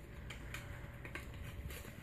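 Faint rustling and a few light ticks of a small folded paper slip being unfolded by hand, over a quiet room hum.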